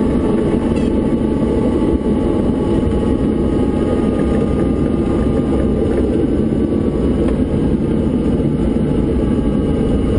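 Diamond DA40 single-engine light aircraft's engine and propeller running steadily, heard from inside the cockpit as it rolls along the runway.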